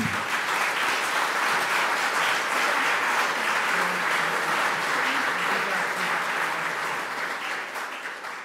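Audience applauding: a steady spread of many hands clapping that begins to die away near the end.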